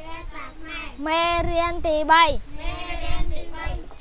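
Young children reciting a Khmer lesson in a sing-song chant, drawing out the syllables into long held notes.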